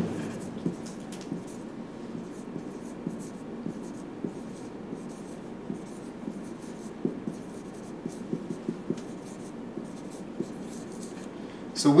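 Marker writing on a whiteboard: a run of short, light strokes and taps, irregularly spaced, over a steady low room hum.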